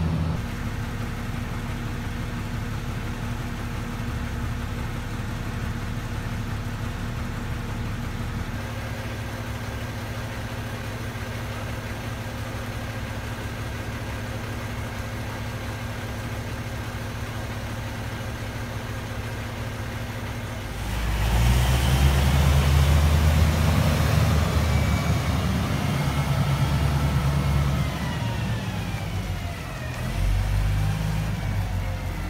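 Terex TR60 mining dump truck's large diesel engine running at a steady low speed, then much louder as it is revved about two-thirds of the way through, its pitch sliding down again near the end.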